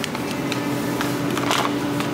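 Plastic grape clamshell packs handled and set into a wire shopping cart: a few clicks and a brief plastic rustle, over a steady low tone in the background.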